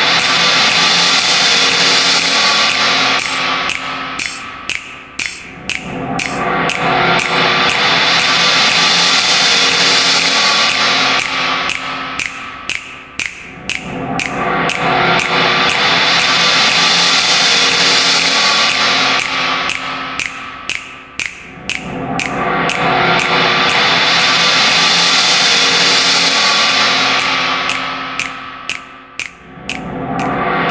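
Sample-based electroacoustic music: a hissing noise swells up and fades away about every eight seconds. Under it sit steady held tones, and a fast stream of sharp clicks runs on at roughly two a second.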